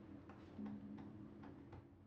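Faint, even ticking, about three ticks a second, over a low hum that comes and goes.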